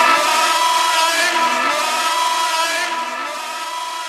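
Breakdown in a frenchcore track: the kick drum and bass have dropped out, leaving a sustained, distorted high synth chord with no low end that slowly fades.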